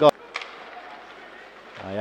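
Ice-rink sound during live play: a steady hiss of skates on the ice, with a sharp click just at the start, like a stick or puck striking.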